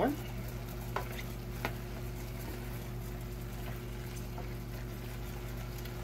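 Ground beef sizzling as it browns in a stainless steel saucepan, stirred with a wooden spoon, with two light knocks of the spoon against the pan in the first two seconds. A steady low hum runs underneath.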